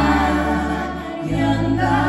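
Live band music: three women's voices singing together in harmony over acoustic guitar, drums and a sustained low bass line that changes note a little past the middle.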